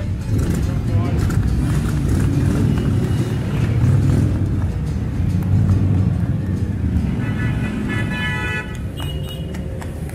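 A column of motorcycles riding past at low speed, their engines making a steady low rumble. A vehicle horn sounds for over a second about seven seconds in.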